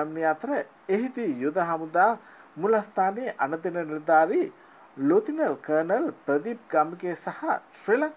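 A voice narrating in Sinhala, with two short pauses, over a steady high-pitched whine.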